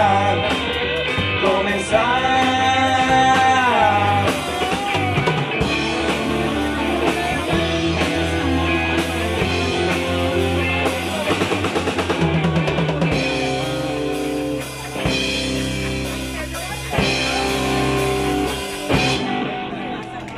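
Live rock band playing electric guitars through amplifiers with a drum kit. A long held note opens, and the song winds down and ends about a second before the end.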